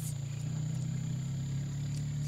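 Vehicle engine idling, a steady low hum heard from inside the cabin.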